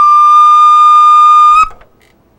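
Small upright flute playing solo, holding one long, high final note that stops abruptly about a second and a half in, followed by a brief room echo.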